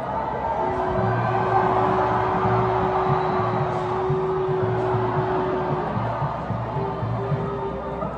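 Music with a steady low drum beat and one long held note, over a crowd cheering, the note breaking off about six seconds in and coming back briefly near the end.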